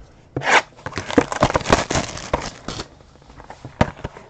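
Trading card packs being handled and opened: a quick tearing rustle about half a second in, then a couple of seconds of dense rustling, scraping and light clicks that thins out, with one sharp click near the end.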